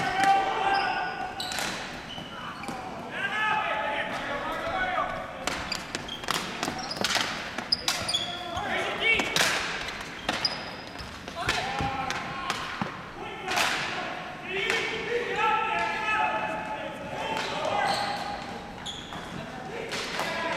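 Indoor ball hockey play on a gym floor: repeated sharp clacks of sticks hitting the ball and the floor, echoing in the hall, with players' voices calling out at times.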